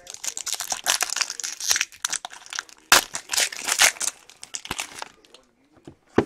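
Foil wrapper of a 2016 Infinity football card pack crinkling and tearing as it is pulled open by hand, in two bursts, the second about three seconds in.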